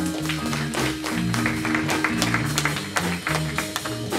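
Small jazz combo playing a medium-tempo blues: a walking bass line stepping about four notes a second under piano chords and cymbal strokes.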